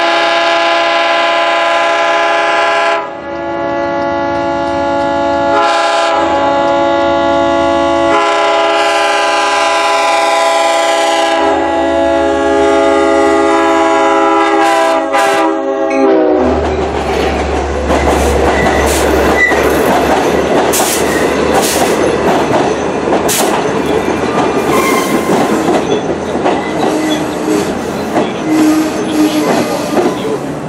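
LIRR EMD DE30AC diesel locomotive's Nathan K5LL five-chime air horn blowing a long, long, short, long sequence on approach. The final long blast drops in pitch as the locomotive passes and cuts off about 16 seconds in. Then the locomotive's rumble is followed by the bilevel coaches rolling by, their wheels clattering and clicking over the rail joints.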